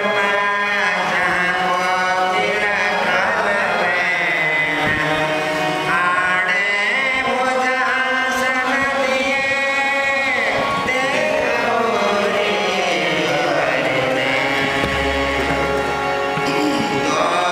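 Men singing a devotional dhrupad-style Samaj Gaayan pada together, voices sustaining and gliding over a steady harmonium drone, with a few soft pakhawaj drum strokes.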